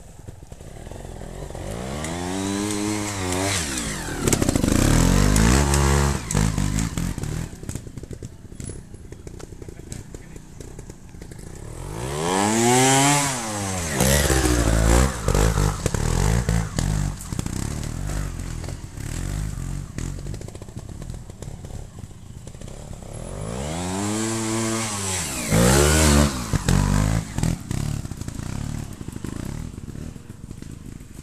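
Trials motorcycle engines revving on three passes up a steep dirt climb, about ten seconds apart. Each time the engine pitch rises and then falls away.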